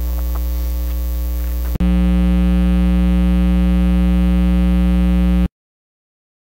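Loud electrical mains hum, a steady buzz made of many evenly spaced tones. A click a little under two seconds in is followed by a louder, brighter hum, which then cuts off abruptly to silence shortly before the end.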